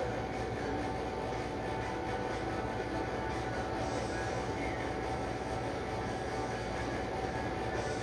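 Steady background noise: an even low hum and hiss with a faint constant high tone, unchanging throughout.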